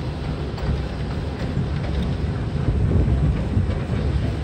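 An amusement-park miniature train ride running, heard from inside its open car: a steady low rumble with a few faint clicks.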